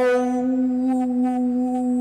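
A woman singing a cappella, holding one long steady note on the last word of a sung line.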